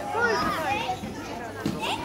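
Several young children's high voices chattering and calling out over one another.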